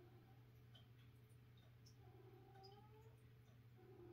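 Near silence over a steady low hum, with two or three faint, drawn-out cat howls.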